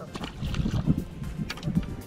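A small catfish splashing into the river as it is released, then water and wind noise over quiet background music.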